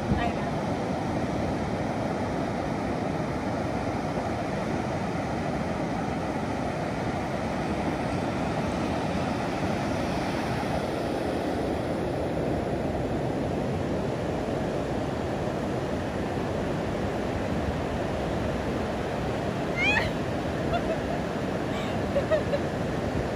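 Ocean surf washing steadily on the shore, with a short high call, rising and falling, near the end.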